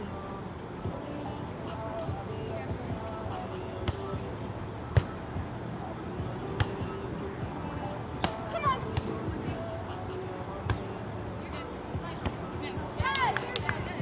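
Beach volleyball rally: a ball smacked by hands or forearms four times, sharp hits a second or two apart, with short shouted calls from the players after the third hit and again near the end.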